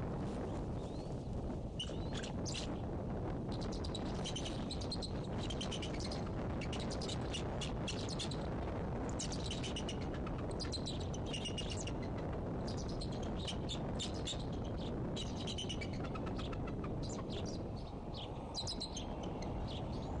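Bird chirping in many quick runs of short, high notes, heard throughout over a steady low background noise.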